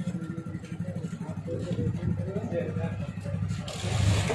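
Fuel dispenser running as it pumps petrol, a steady low hum with a fast even pulse. Voices murmur faintly behind it.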